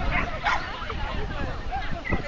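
A dog barking and yipping, with people talking around it.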